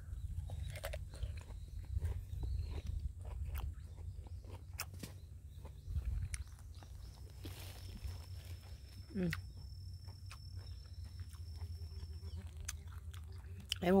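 Someone chewing a crisp raw sweet persimmon: irregular small crunches over a steady low rumble, with a short closed-mouth "mm" about nine seconds in.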